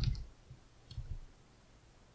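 Computer keyboard keys clicking faintly while a word is typed in a code editor: one click at the start and a fainter one about a second in.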